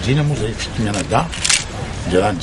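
A man speaking, with one short, sharp click about one and a half seconds in.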